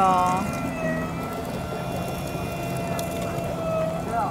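Electric sugarcane juice press running, a steady hum with a few held tones as a cane stalk is fed through its crushing rollers.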